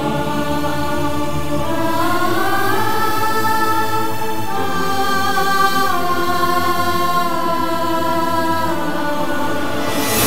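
Background score music of long held, choir-like sustained notes that slide or step to new pitches a few times.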